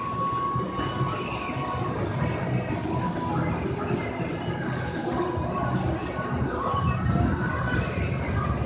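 Steady low rumble and noise of the Wonder Wheel's steel Ferris wheel car riding on the turning wheel, heard from inside the car, with faint high metallic squeal tones coming and going.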